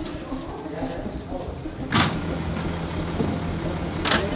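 Indistinct voices over the low, steady hum of an idling vehicle engine, with a sharp knock about two seconds in.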